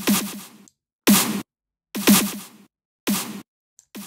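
Gated snare sample in the Hammerhead Rhythm Station iPad drum machine playing on its own, about one hit a second with silence between, alternating short hits and hits with a longer tail, with distortion switched on for the snare channel.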